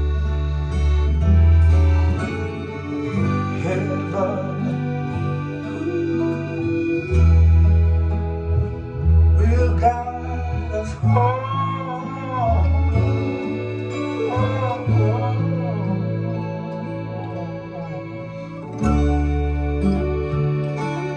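Recorded acoustic-blues song played from an LP through Western Electric L8 enclosure speakers: an instrumental stretch of guitar over a deep, stepping bass line, with a wavering, bending melody line around the middle.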